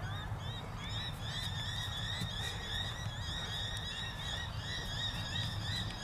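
A chorus of animal calls: many short chirps repeating rapidly and overlapping, high-pitched, over a steady low rumble.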